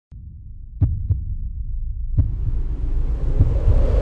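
Logo-intro sound effects: a low rumbling drone with deep thumps, two close together about a second in and a third just after two seconds, then a hissing swell that builds and rises.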